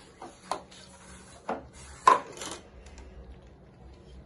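A few light knocks and rubbing sounds of a homemade balloon hovercraft, a CD disc with a plastic cap, being handled on a tabletop, the loudest about two seconds in.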